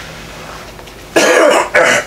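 A man coughing twice in quick succession, a little over a second in: two loud, harsh bursts, the first longer than the second.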